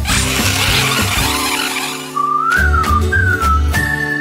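Cartoon soundtrack: music with a noisy crash-like rush in the first second and a half, then a whistle that rises and falls twice and settles on a held note near the end.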